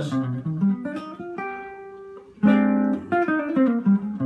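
Seven-string jazz guitar played solo, demonstrating a single-note line played off a chord form. It opens with a quick run of picked notes and a held chord, then a chord is struck firmly about two and a half seconds in, followed by a descending run of single notes.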